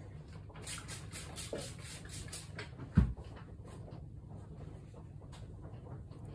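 A quick run of short scratchy strokes, about four a second, followed about three seconds in by a single loud thump, over a low steady hum.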